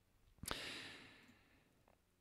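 A man's breath into a close microphone between sentences. It opens with a small mouth click about half a second in and fades away within a second.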